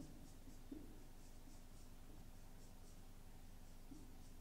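Faint marker-pen strokes on a whiteboard: a run of short, soft scratches.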